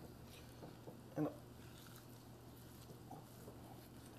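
Faint sounds of a knife cutting through roasted turkey meat along the backbone, with a short voice-like sound just after a second in.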